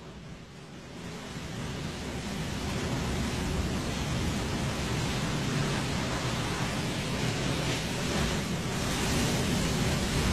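Ocean surf breaking on a sandy beach: a steady rush of noise that fades in over the first two or three seconds.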